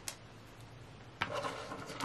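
Small plastic toy figures being handled and set down on a wooden tabletop: faint light taps and rubbing, a little louder from just past a second in.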